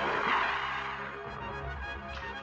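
Cartoon sound effect of water splashing as a cage-like bubble bursts up through the surface, loudest just at the start and fading over about a second, over orchestral background music.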